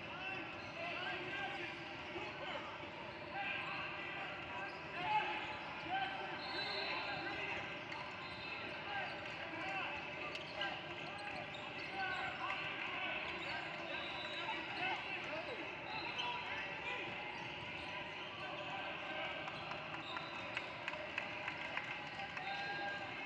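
A basketball dribbling on a hardwood gym floor during a game, with a few short high sneaker squeaks and a steady background of indistinct players' and spectators' voices in a large gymnasium. The ball knocks come more often near the end.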